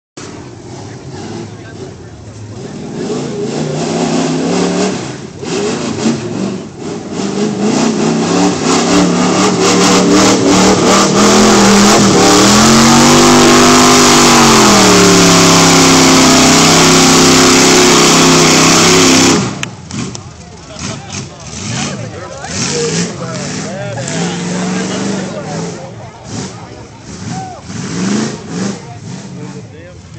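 Lifted pickup truck's engine revving hard as it churns through a deep mud pit, building up over several seconds and running flat out, with a dip and rise in pitch near the middle. The engine cuts off suddenly about two-thirds of the way through, leaving quieter, uneven engine sound and voices.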